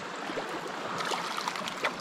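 Shallow creek water running steadily over a stony riffle, with a few faint ticks about a second in and near the end.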